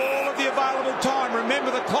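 A male television commentator speaking over the steady noise of a stadium crowd.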